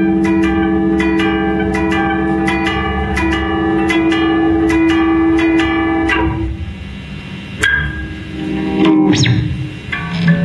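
Two electric guitars played live through amplifiers: a held, droning chord under rapid, evenly repeated strokes, about three a second. The strokes stop about six seconds in, leaving a quieter stretch of a few single sharp struck notes before the guitars swell again near the end.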